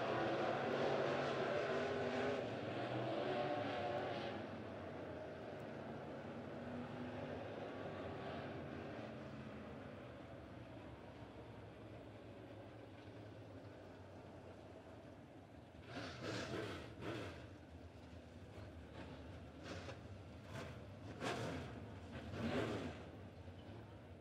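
Dirt-track modified race car engines running on the track, loudest at first and fading as the cars ease off after the finish. Later come a few short swells in pitch and level as a car passes and revs.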